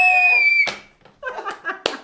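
A loud, held cheer ending abruptly, then softer laughter and rustling of hands at the table, with one sharp click near the end.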